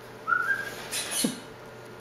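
A short, clean whistle rising slightly in pitch, followed by a brief soft rustle and a faint low squeak.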